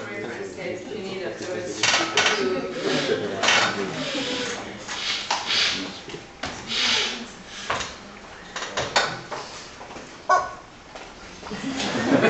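Indistinct low voices in a hall, with irregular knocks, rustles and clatter from papers and a laptop being handled at the lectern.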